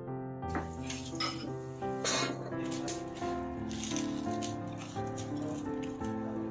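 Background music over deep-frying: oil sizzling around cornstarch-coated eggplant pieces on their second fry, with sharp clicks scattered through it.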